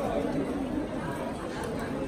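Indistinct chatter of several people talking at once, with no words standing out.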